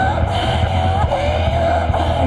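Live band music: a woman's voice holds a high, wavering melody line over a steady low bass drone.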